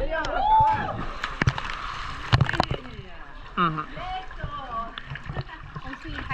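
Water sloshing and splashing against a camera held at the water's surface, with the lens dipping under at the start, and a few sharp knocks or splashes about two and a half seconds in.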